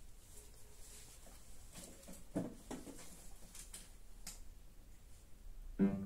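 Quiet room with a few faint knocks and shuffles as the pianist moves to the bench and sits down; near the end the first notes of an upright piano sound.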